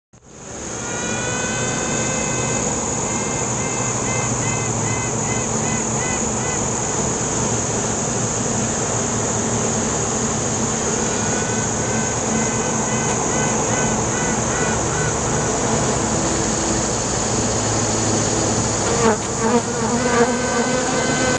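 Steady insect-like buzzing with a constant high hiss, fading in at the start, and a wavering pitched melodic line that comes in twice over it.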